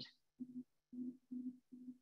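Faint low beeps of steady pitch, repeating about twice a second.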